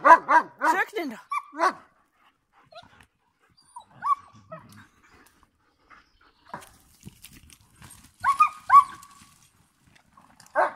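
Young German Shepherd dogs at play, giving short, high yips and barks: a flurry at the start and two sharp yips near the end, with scattered quieter calls and rustling between.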